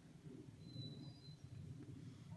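Near silence: faint low outdoor rumble, with one brief thin high note a little over half a second in.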